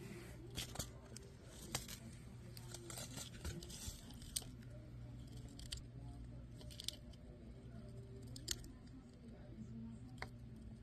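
Syrian hamster nibbling at a seed-coated treat in a walnut shell: faint, irregular small crunches and clicks, several seconds apart.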